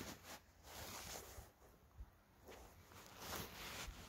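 Faint crunching and rustling of a person's steps and clothing on gravelly dirt, in several soft swells with a short knock about two seconds in.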